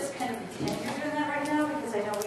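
A woman's voice, the words indistinct, with one held note about a second in.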